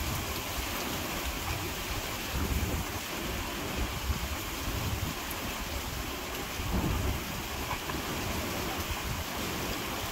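Wind buffeting the microphone: a steady rushing noise with low rumbling gusts that swell and fade, loudest about two and a half seconds in and again near seven seconds.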